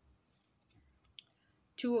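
A few light clicks and rustles of a tarot card being slid off the deck and turned over, the sharpest click a little past the first second.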